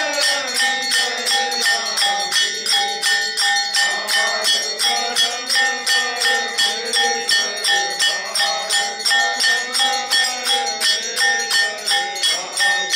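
Aarti music: bells struck in a steady rhythm of about three strokes a second, ringing over devotional singing.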